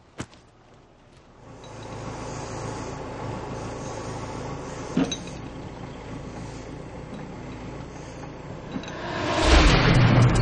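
Caterpillar backhoe loader's diesel engine running steadily as it digs, with a sharp click just after the start and a short knock about halfway through. Near the end a much louder rushing noise swells up over it.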